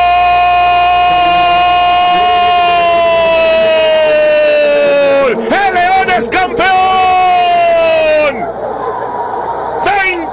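Spanish-language football commentator's drawn-out goal call, "gooool", held as one long shouted note for about five seconds that sinks slowly in pitch, then a few short cries and a second long held shout, with crowd noise underneath and left on its own near the end.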